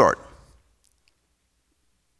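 A man's spoken word trailing off, then a pause of near silence with a couple of faint clicks about a second in.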